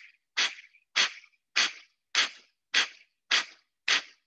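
Breath of Fire yoga breathing: a steady run of sharp, forceful exhales through the nose, driven by the lower abdomen, about seven short hissing puffs at a little under two a second. The inhales between them come in passively and are not heard.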